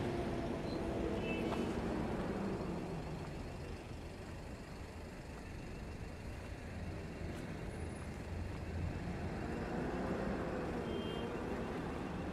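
Street traffic: vehicle engines running with a steady low rumble, louder near the start and again near the end.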